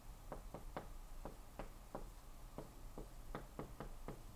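Dry-erase marker tapping and stroking on a whiteboard as letters and bonds are written: a faint series of short, irregular ticks, about eleven in four seconds.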